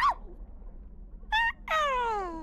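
Cartoon seal pup character vocalizing in pitched, squeaky calls rather than words: a short rising call at the start, a brief call about a second and a half in, then a longer call that slides down in pitch near the end.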